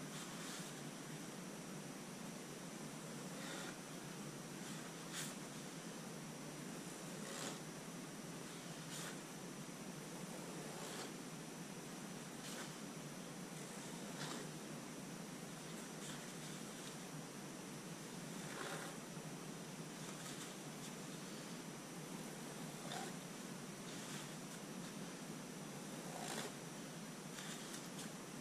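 Quiet, steady hiss of room tone with a faint constant high whine, broken every second or two by soft ticks and rustles from gloved hands working a small wooden skewer and a paper towel over a painted canvas.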